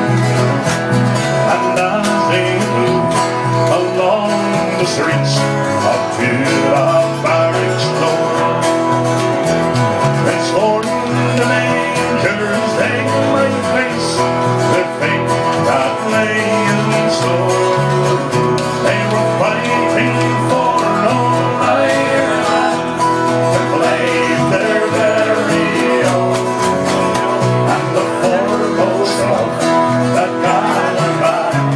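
Live acoustic band of several strummed acoustic guitars playing an Irish ballad at a steady tempo.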